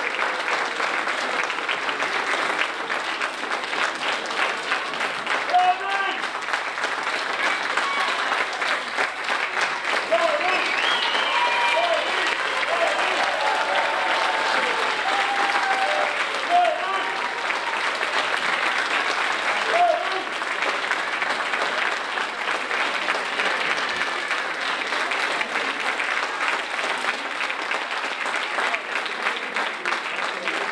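Audience applauding steadily through a curtain call, with voices calling out over the clapping, mostly in the middle stretch.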